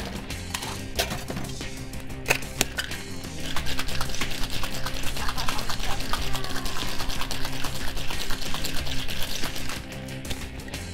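Ice rattling hard in a cocktail shaker, a fast steady rattle that starts about a third of the way in and stops just before the end, after a couple of knocks. Background music plays throughout.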